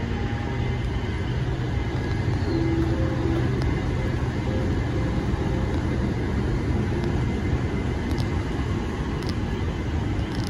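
Steady low rumble of outdoor city ambience, the mixed hum of traffic and machinery around a rooftop, with a faint hum coming through briefly a few seconds in.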